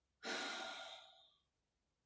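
A woman's single sigh, an audible breath out that starts about a quarter second in and fades away over about a second.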